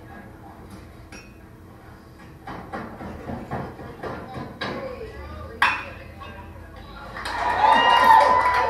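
An aluminum baseball bat pings sharply once as it meets a pitch, a little past halfway through, amid spectators' voices. The crowd then breaks into loud cheering and shouting over the last second or so.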